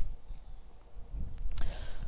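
Low, uneven wind rumble on the microphone, with a brief short noise about one and a half seconds in.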